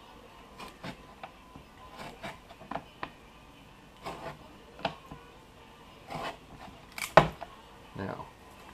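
Utility knife trimming the corners off a piece of woven fire hose on a plywood board: a string of short cutting and scraping strokes through the fabric, with a sharp knock about seven seconds in, the loudest sound.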